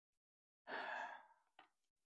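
A man's single audible breath, a short sigh-like rush of air lasting about half a second, a little past the middle of a pause in his talk.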